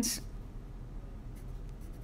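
Wooden graphite pencil drawing on a sheet of paper: quiet, faint scratching strokes, a few more noticeable about one and a half seconds in.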